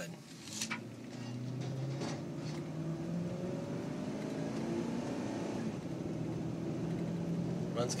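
A 2006 Lincoln Mark LT's V8 engine and tyres heard from inside the cab while driving on rough, patched pavement: a steady low drone that rises slightly in pitch between one and three seconds in, then holds, over even road noise.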